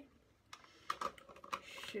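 Handling noise: a quick run of small clicks and taps close to the microphone, with a short hiss near the end.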